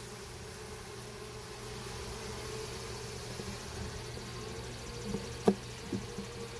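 Honeybees humming steadily around an open hive. Near the end a hive tool taps sharply against the hive box as it is worked into the corner to crush small hive beetles.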